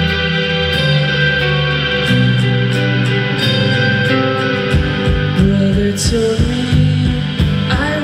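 Live rock band playing an instrumental passage: electric guitars, keyboard, bass and drums. The drums turn to a steady driving beat about halfway through.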